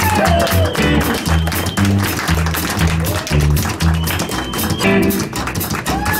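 Live rockabilly band playing an instrumental break: electric guitar lead with bent, sustained notes about four to five seconds in, over an upright bass pulse and acoustic guitar rhythm.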